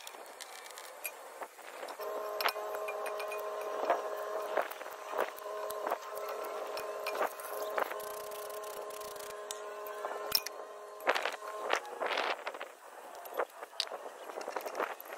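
Aerosol brake cleaner sprayed onto a disc brake caliper bracket: a steady whistling hiss that starts about two seconds in and stops near the end. Metal clicks and knocks from brake parts being handled run through it and are sharpest near the end.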